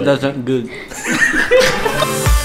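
A man chuckling and laughing, with a few half-spoken sounds.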